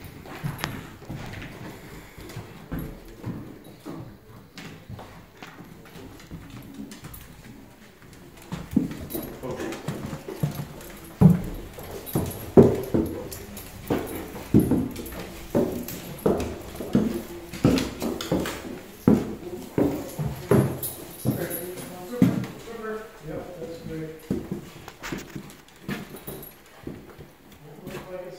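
Footsteps going up a wooden staircase: a steady run of heavy treads, about one and a half a second, from about nine seconds in until about twenty-two seconds, then lighter steps.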